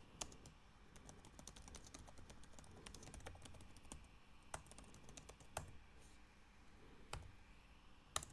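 Faint typing on a computer keyboard: a run of irregular key clicks, with a few louder keystrokes in the second half.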